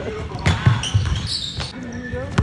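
Basketball being dribbled on a hardwood gym floor, a few sharp bounces in quick succession, with high sneaker squeaks near the middle.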